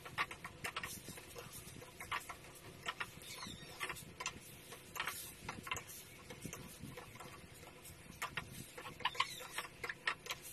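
Spatula scraping and clicking against a wok while vegetables and chicken are stir-fried, in irregular short strokes.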